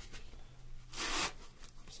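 A short rasping scrape about a second in: a foam filter sponge being pushed onto the end of a plastic pipe.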